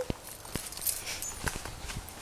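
Footsteps and rustling clothing as someone walks carrying a toddler, with a few scattered light knocks.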